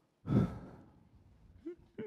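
A speaker's sigh close to a headset microphone: one loud breathy exhale about a quarter second in, fading over half a second, followed near the end by a brief short vocal sound.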